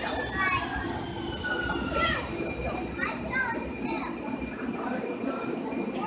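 Siemens S200 light rail vehicle pulling into an underground station platform and slowing to a stop. It rumbles, with a thin high whine falling slowly in pitch over the first couple of seconds, and the rumble dies away about five seconds in as the train halts.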